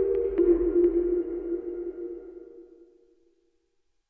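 Electronic outro sting: a held two-note synthesizer tone with a few sharp clicks, fading out and gone by about three seconds in.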